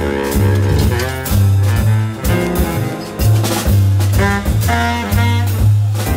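A jazz quartet playing live: saxophone melody over acoustic piano, double bass and drum kit, with steady bass notes and regular cymbal strokes.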